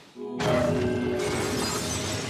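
Porcelain figurine shattering: a sudden crash about half a second in, followed by a spray of breaking shards, over sustained music.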